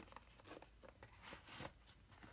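Faint rustling and a few light clicks of pens and tools being handled in the pockets of a waxed canvas artist roll.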